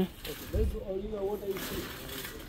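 Faint background voice in a shop, lower than the nearby talk, with a low bump about half a second in and a short hiss near the end.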